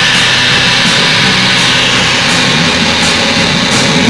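Live rock band playing a loud, noisy passage: a dense wash of distorted electric guitar with cymbals crashing over it.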